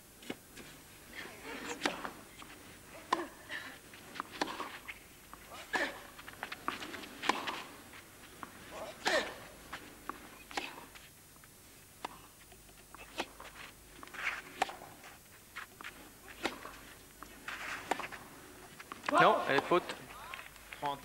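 Tennis ball struck back and forth in a rally on a clay court, a sharp hit about every one and a half seconds. Near the end comes a louder burst of crowd voices.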